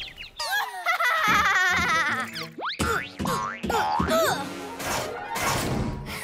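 Cartoon background music with comic sound effects: a wavering, warbling tone in the first two seconds, then several quick up-and-down pitch glides and light knocks.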